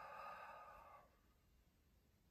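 A man's long sighing out-breath that ends about a second in.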